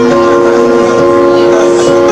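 A girl singing live into a microphone over a recorded pop-ballad backing track, holding a long steady note over sustained chords.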